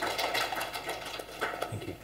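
Applause from a small audience, a quick run of claps that thins out and fades near the end.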